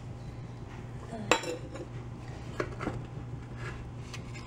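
Metal measuring cup clinking against metal kitchenware: one sharp clink about a second in, then two lighter clinks near three seconds, over a steady low hum.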